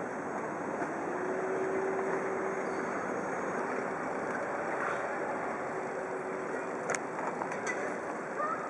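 Steady city street background noise, an even rush of distant traffic, with a few sharp clicks near the end.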